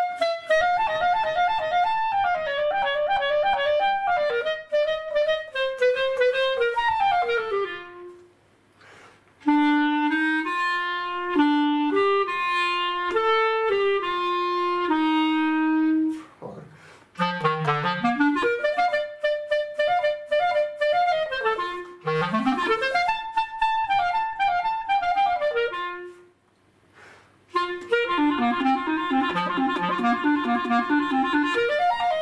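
Solo clarinet played in four short phrases with brief breaks between them. The first phrase runs downward through the upper register. The second is slower and sits in the low register. The third has two rising glides from the instrument's lowest notes. The last is a quick low passage.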